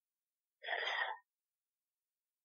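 A woman's short intake of breath, about half a second long, a little way in, in an otherwise silent pause.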